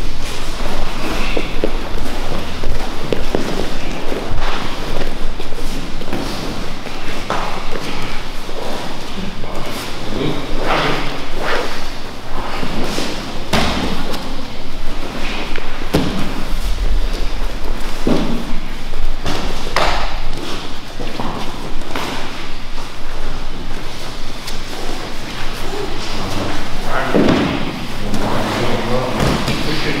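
Two grapplers rolling on tatami mats: irregular thuds as bodies and limbs hit the mat, with voices talking in the background.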